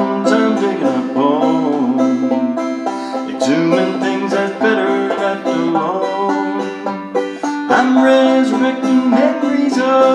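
Banjo picked two-finger style in a steady instrumental break of a country song, with some notes sliding up in pitch.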